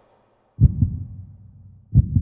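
Deep low thumps in a heartbeat rhythm after a brief silence: a double beat about half a second in and another near the end, each fading away.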